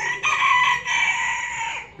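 A rooster crowing: one long, loud call lasting nearly two seconds.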